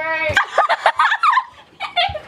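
Girls squealing and shrieking in high voices, amid laughter.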